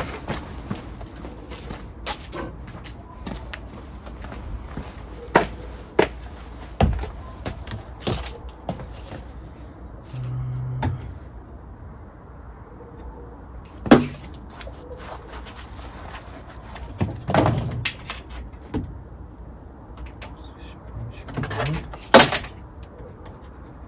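Scattered knocks and clicks from hands and tools working on an aluminium-profile kitchen frame. One sharp knock about 14 seconds in is the loudest, with a cluster of knocks a few seconds later.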